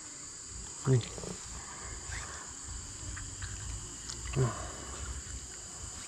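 A steady, high-pitched chorus of insects, with a man giving two short falling hums over it, about a second in and again about four seconds in.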